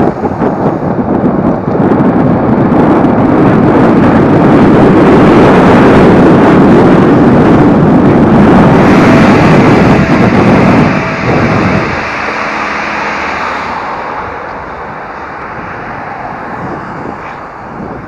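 Wind rushing over the microphone, with road rumble, while riding an electric scooter. The noise is loud and steady, then drops sharply about twelve seconds in as the scooter slows at a junction.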